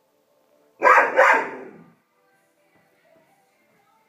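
A young dog barks twice in quick succession about a second in, loud and sharp.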